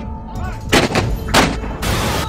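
Three sharp, loud bangs like gunshots, about half a second apart and starting just under a second in, each with a short ring-out, over dramatic background music.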